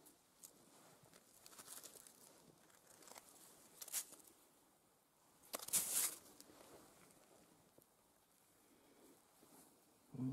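A hand scraping and rummaging through loose gravel and rock fragments, stones crunching against each other in a few short scrapes, the longest and loudest about six seconds in.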